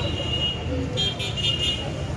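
Street background: a steady low traffic rumble with voices, and a high-pitched tone that pulses rapidly for under a second, starting about a second in.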